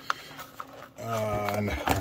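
A few light clicks and taps of a small cardboard box being handled, then a man's long drawn-out "uhhh" held at one steady pitch for about a second in the second half.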